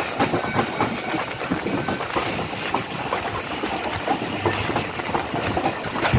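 Passenger train coaches running at speed, heard from aboard: a steady rumble and rattle with wheels clicking over the rail joints.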